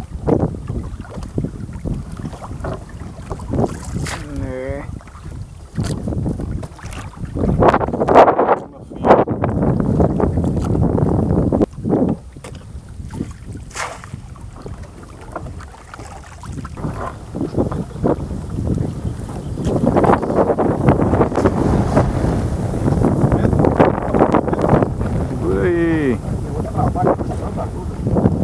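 Wind buffeting the microphone over water moving against a small boat, in uneven gusts that are loudest around eight seconds in and again over the last several seconds.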